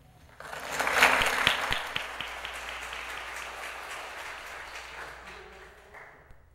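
Audience applauding: the clapping breaks out suddenly about half a second in, is loudest around a second in, then gradually fades.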